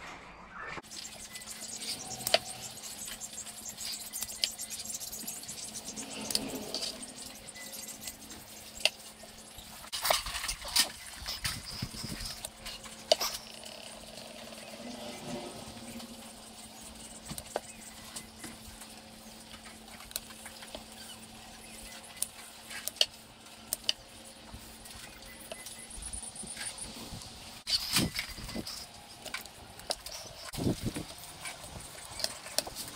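Poultry shears snipping through quail wings and legs at the joint: sharp, irregular clicks and crunches with pauses of several seconds between cuts, over a faint steady hum.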